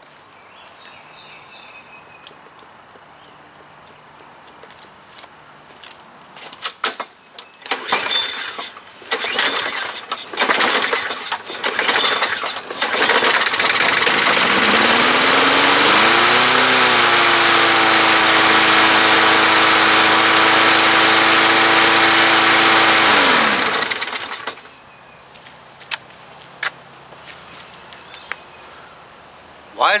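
Gas push mower being pull-started: several short pulls that sputter without catching, then the engine catches, rises to a steady running speed, runs for about ten seconds and is shut off, its pitch falling as it stops. The mower is starting hard, which the owner puts down to water from bad gas in the carburetor float bowl.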